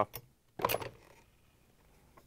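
A big flathead screwdriver seated in a refrigerator ice auger drive bar is snapped clockwise, giving a sharp metallic clink about two-thirds of a second in as the reverse-threaded bar breaks free of its shaft. A faint click comes just before it.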